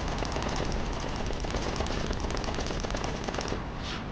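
Cartoon sound effect of massed rifle fire: a rapid, dense crackle of many gunshots that thins out near the end.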